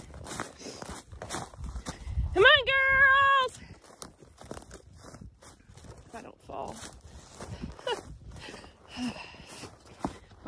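Footsteps crunching on snow-crusted pasture at a steady walking pace. About two and a half seconds in, a single high call rises and then holds for about a second, the loudest sound here.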